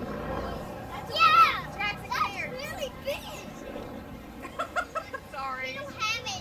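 Children's high-pitched shouts and squeals from an airshow crowd, loudest about a second in, over a faint low steady hum.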